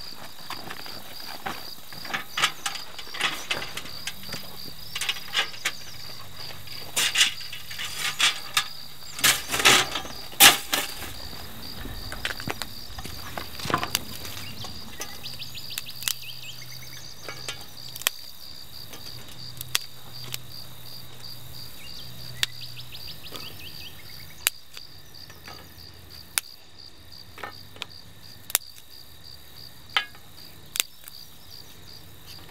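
Steady high chirring of insects, with a run of sharp metallic knocks and rattles over the first twelve seconds or so as a folding stainless-steel fire pit is unpacked and opened, loudest around ten seconds in; after that only the odd single click as kindling sticks are laid in the pan.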